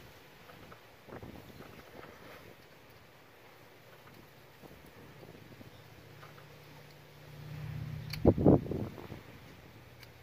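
Plastic electrical connector giving a snap and click about eight seconds in, as the Power Stroke's factory three-pin fuel rail sensor connector is pushed home onto a performance module harness. A short cluster of knocks from the hand follows it, with faint handling rustle around it. A low steady hum comes in a couple of seconds before the snap.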